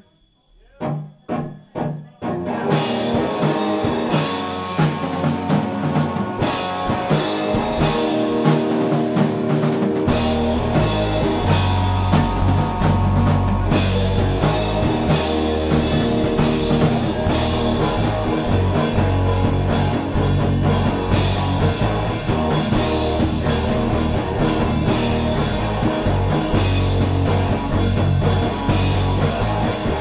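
Punk rock band playing live, with drum kit and electric guitars. It opens with four short separate hits, then the full band comes in together, and the low end fills out about ten seconds in.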